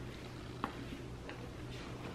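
Quiet handling of a purse as it is lifted: a short click about a third of the way in and a couple of fainter ones after, over a low steady hum.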